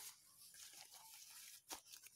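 Near silence: faint room tone, with one soft click near the end.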